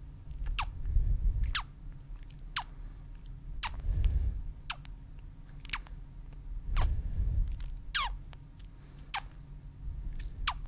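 Close-miked ASMR mouth sounds: wet kisses and lip pops, about one a second, each a short pop falling quickly in pitch. Soft low rumbles swell in behind them a few times.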